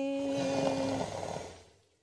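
A woman's singing voice holds one note for about a second. Under it a breathy, rushing noise swells and then fades out over the following second.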